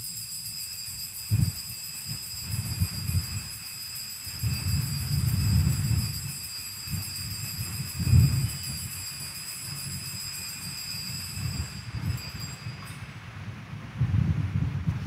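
Altar bells ringing steadily at the elevation of the consecrated host, over a low uneven rumble. The ringing stops about a second before the end.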